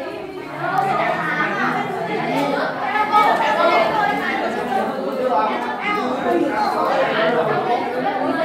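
Many students talking at once in a classroom, a steady, indistinct chatter of overlapping voices.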